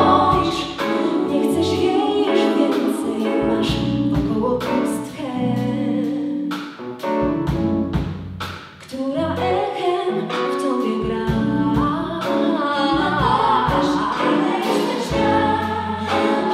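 A live pop band: a woman sings lead with three backing singers, over bass guitar, keyboards and drums. The music dips briefly just past the middle, then comes back in full.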